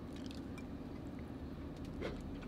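Faint chewing of a mouthful of orange scone, with small soft clicks of the mouth, over a low steady hum.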